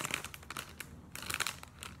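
Plastic bag crinkling and rustling as it is handled to get out silk fibres, in irregular bursts of crackles, busiest near the start and again a little past the middle.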